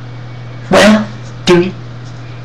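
A dog barks twice indoors: two short, loud barks about three-quarters of a second apart.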